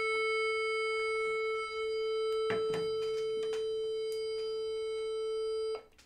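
Electronic tuner-metronome sounding a drone on the pitch A, a steady held tone serving as the reference pitch for tuning the cello's A string; it cuts off suddenly near the end. A soft knock sounds about two and a half seconds in.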